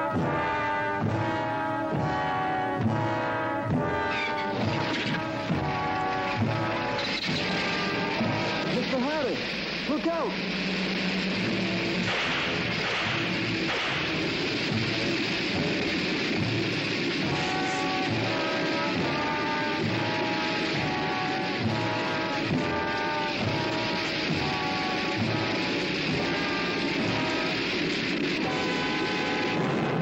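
Dramatic orchestral film score with brass, playing in a repeated rhythmic figure. About four seconds in, a steady rushing noise joins it and partly drowns it out, strongest around twelve seconds in, before the rhythmic music comes back to the front.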